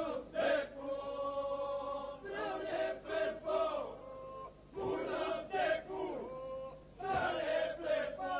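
Albanian Lab-style polyphonic men's singing. The group holds a steady drone underneath while lead voices come in over it with wavering, bending phrases, four times.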